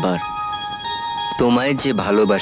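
A simple electronic chiming tune, like a musical gift or greeting-card melody, playing a series of clear, steady notes; a voice comes in near the end.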